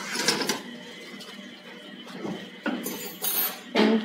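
Light clicks and metallic clinks from handling the open countertop electric oven and its baking tray, with a short scraping hiss about three seconds in.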